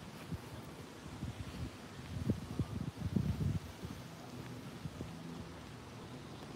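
Low, irregular rumbling and bumping on a phone microphone outdoors, strongest between about two and three and a half seconds in.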